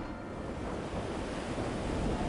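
Steady rushing of the Cañete River's fast white water tumbling over rocks.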